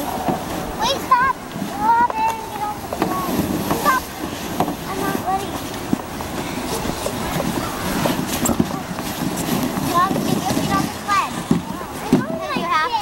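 Children's high-pitched calls and squeals near the start and again near the end, over a steady rushing noise through the middle.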